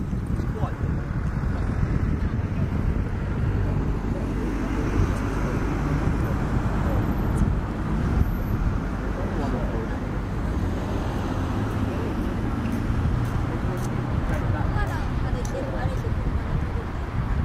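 Small boat outboard motor running steadily, with indistinct voices over it.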